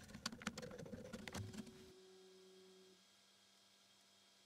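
A quick run of small plastic clicks and ticks as a small backlit plastic insert is handled and pushed into place in a 3D printer's toolhead cover. The clicks stop a little under 2 seconds in, leaving a faint steady hum.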